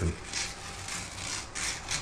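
Masking tape and paper being peeled and torn off painted door trim, a dry ripping sound in several short bursts.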